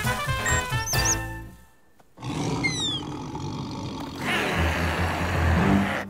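Cartoon music that stops about two seconds in. It is followed by a few quick falling whistle effects and, from about four seconds in, a loud steady noise with a low rumble.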